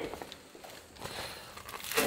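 Faint rustling and crinkling of a mesh sack of live crawfish being handled and carried.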